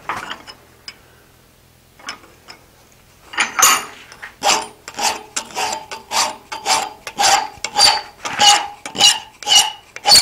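Hand file stroking across the edge of a small forged steel leaf, cleaning it up and filing a bevel on it. After a quiet start, steady strokes of about two a second begin some three seconds in, each with a slight metallic ring.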